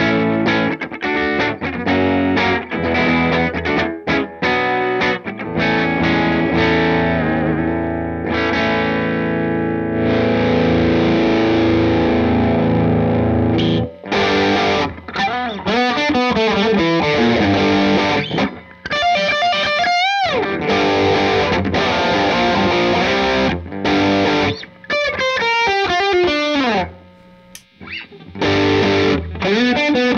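Music Man Stingray RS electric guitar played through a distorted Marshall-style amp tone: strummed and held chords for about the first half, then single-note lead lines with string bends and vibrato, one note dipping deep in pitch and rising back about two-thirds of the way through.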